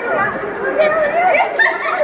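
Several people talking and chattering at once, voices overlapping.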